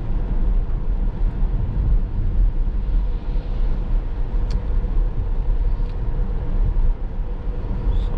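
Steady low tyre and road rumble inside the cabin of an electric Tesla Model S Plaid driving on a rain-wet road at about 35 mph.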